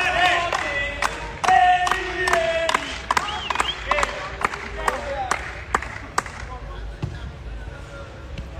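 Spectators shouting and calling out around a five-a-side football court, with a quick run of sharp knocks a few times a second that die away after about six seconds.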